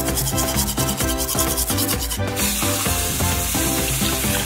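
A child's manual toothbrush scrubbing teeth in quick back-and-forth strokes for about two seconds, then a tap running steadily, filling a plastic cup. Background music plays throughout.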